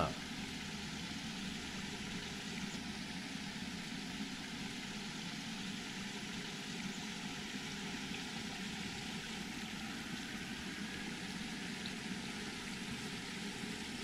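Steady, even rushing background noise with no distinct sounds in it.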